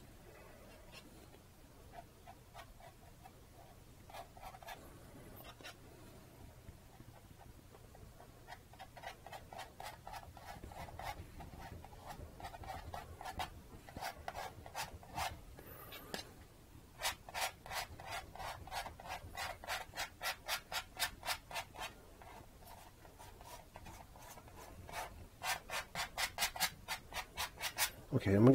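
Palette knife scraping acrylic paint across a stretched canvas in repeated short strokes, faint at first, then faster and louder, about four strokes a second in the second half.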